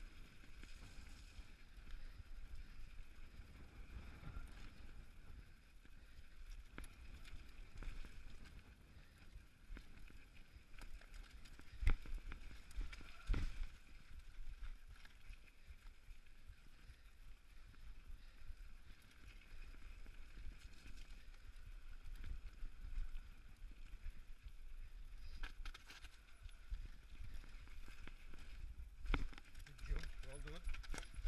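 Mountain bike descending a dirt and gravel trail, recorded from the bike itself: a steady rumble of tyres over the ground, with rattle from the bike and wind on the microphone. Two sharp knocks about a second and a half apart near the middle, as the bike hits bumps.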